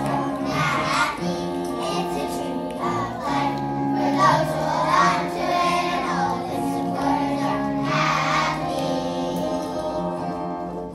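A group of young children singing a song together on stage, with a musical accompaniment holding steady notes beneath their voices.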